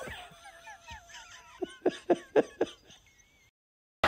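A man laughing in a quick run of short, breathy bursts about a second and a half in, over faint crowd cheering from a stadium concert.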